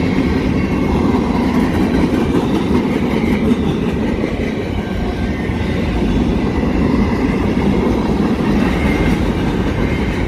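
Freight cars of a mixed manifest train (tank cars, an autorack, boxcars) rolling past at a grade crossing: a steady, even rumble of steel wheels on the rails.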